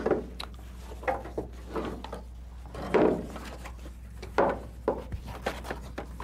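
Irregular rustling and scuffing as a fabric blood-pressure cuff is handled and wrapped around a person's upper arm. There are a few louder handling sounds, about three seconds in and again about a second and a half later.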